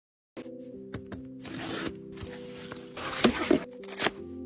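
Cardboard shipping box being opened by hand: flaps rustling and cardboard scraping in a few stretches, with some sharp taps. Soft background music with sustained notes plays throughout.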